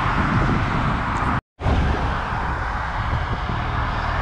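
Steady vehicle rumble and hiss with a low hum, cut off completely for an instant about a second and a half in.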